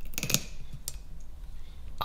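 A few light metallic clicks in quick succession, then one more a little under a second in: an adjustable spanner being tightened and worked on a glass bottle's cap.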